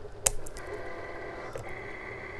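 Cricut vinyl cutting machine running as it cuts, a steady mechanical whine with thin held tones, after a single sharp click about a quarter second in.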